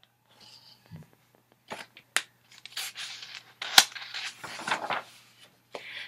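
Paper pages of a paperback picture book rustling and crinkling as they are handled and turned, with a few sharp crackles.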